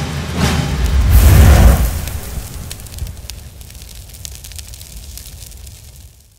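Cinematic logo-sting sound effect: a deep booming whoosh that swells to its loudest about a second and a half in, then fades slowly under a scatter of fine crackles. The tail of a music track dies away in the first second.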